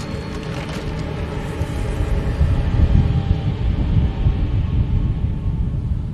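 Deep rumbling drone of a horror-film soundtrack, swelling louder toward the middle, with a faint musical bed.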